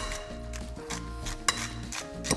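Background music with held notes. A metal potato masher clinks once against a glass mixing bowl about one and a half seconds in.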